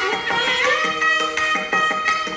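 Live Carnatic music: a melody line holding long notes with gliding ornaments, with violin, over regular mridangam drum strokes.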